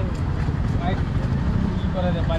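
Indistinct voices over a steady low rumble of roadside traffic.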